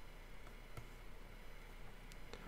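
Quiet room hiss with a single faint click of a computer mouse a little under a second in.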